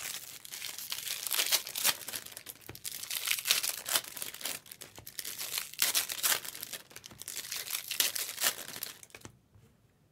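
Foil trading-card pack wrappers crinkling and tearing as packs are opened and handled, in irregular bursts of rustle, dropping away briefly near the end.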